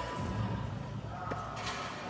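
Faint background music in a large arena hall, over a low steady hum.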